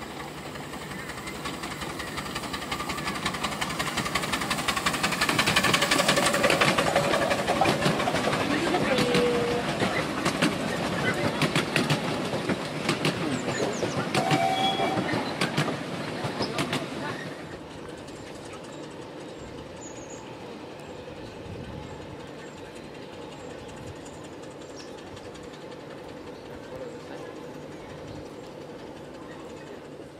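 A 7¼ in gauge miniature railway train loaded with passengers approaches and passes close by, growing louder over the first six seconds. Its wheels click over the rail joints, and the sound drops away after about 17 seconds.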